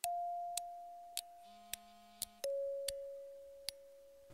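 Quiet electronic tones: a held beep-like note that fades away, then steps down to a lower held note about halfway through, with a few faint ticks scattered between.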